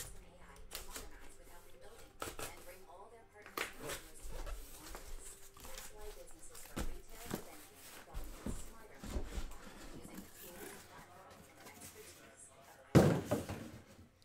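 A cardboard shipping case being handled and opened, with scattered scrapes and light knocks, then one loud thump about a second before the end as a box is set down on the table.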